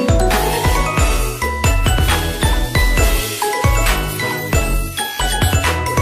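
Electronic background music with a steady beat, a deep bass and quick, bright, bell-like melody notes.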